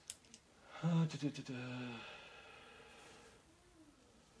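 Mostly a man's drawn-out hesitant 'uh', with a couple of faint sharp clicks just before it and a faint steady rustle after it.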